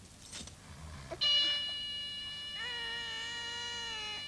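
Smoke alarm going off with a steady, high-pitched electronic tone that starts about a second in and sounds the warning of a fire. From about two and a half seconds in, a high wailing cry sounds over it.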